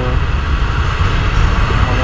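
Wind rush and buffeting on a helmet-mounted microphone over the low rumble of a CFMoto NK250 motorcycle riding through traffic.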